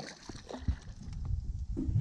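A small hooked fish splashing at the water's surface as it is reeled to the boat, over a low rumble of handling noise, with a low knock a little under a second in.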